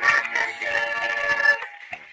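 Sung cartoon music: voices hold a long note together over a backing track, breaking off about one and a half seconds in.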